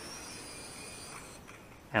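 Faint high whine of a small toy quadcopter's brushed motors during an auto-landing, dipping slightly in pitch. It stops about a second and a half in, as the quad touches down and cuts its motors.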